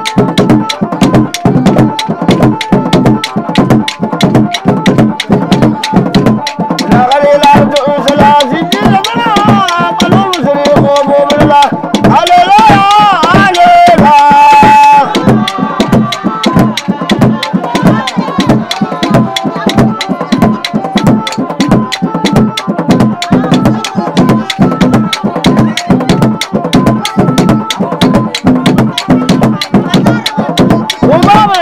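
Somali Bantu sharara dance music: a fast, steady hand-drum beat with singing voices over it, the voices loudest in the middle.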